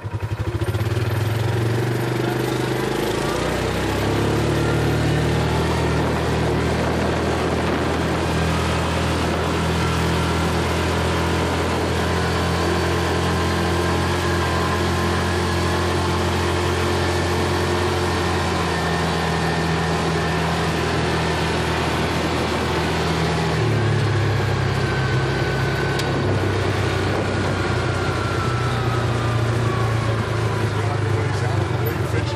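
Yamaha Rhino 450 UTV's single-cylinder engine running under way, heard from the seat. It picks up speed over the first few seconds, holds a steady cruise, then drops in pitch about 24 seconds in as the machine slows.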